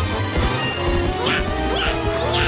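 Cartoon soundtrack: background music with a crash sound effect as a character slams into a hay cart.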